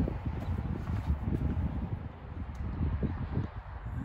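Uneven low rumble of wind buffeting a handheld camera microphone, with soft scuffs of handling noise as the camera is carried along.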